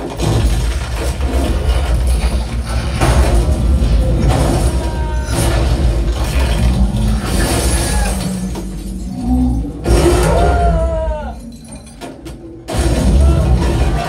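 A film soundtrack played loud through a home-theatre surround system and picked up in the room: music over a deep, steady low rumble, with gliding tones and sharp hits. It drops briefly about twelve seconds in, then comes back up.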